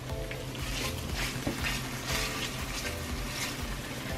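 Chopped garlic and anchovies sizzling gently in olive oil in a skillet over low heat, stirred with a wooden spoon, under soft background music.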